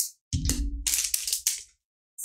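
Handling noise close to the microphone: a run of low thuds and several sharp clicks lasting about a second and a half.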